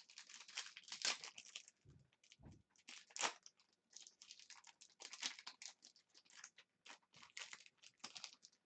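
Foil wrapper of an Upper Deck Allure hockey card pack crinkling and tearing as it is opened by hand, a run of irregular crackles, with two soft low thumps about two seconds in.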